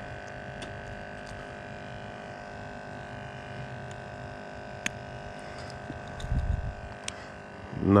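A steady mechanical hum made of several fixed tones, with a few faint clicks and a brief low thump about six seconds in.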